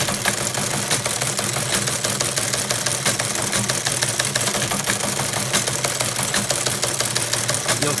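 Teletype Model 15 teleprinter printing line after line: its motor runs with a steady hum under a rapid, continuous mechanical clatter of the typebars striking.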